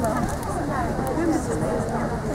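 Indistinct voices talking over one another, a steady background of chatter with no clear words.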